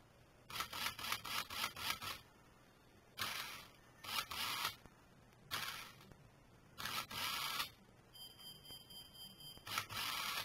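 A toy RC car's small electric drive motor and plastic gearbox spinning the wheels in short, jerky bursts with pauses between them. It starts with a rapid stutter, runs in several separate spurts, and near the end gives a thin whine. The jerky action comes from the control line being tested, which the builder calls the "jerky one".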